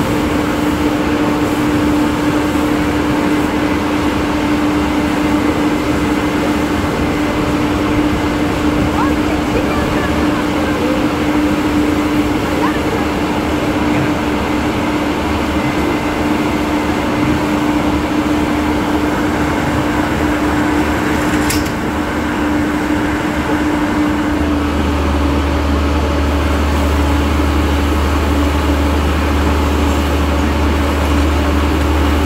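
Fire engine's engine running steadily to drive its water pump, a constant drone whose low rumble deepens about 24 seconds in.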